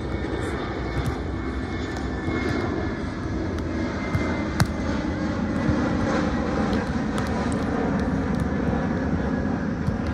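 Low, steady drone of an airplane's engines passing overhead, swelling toward the middle and easing a little near the end. A single sharp smack of a hand on a volleyball comes about halfway through.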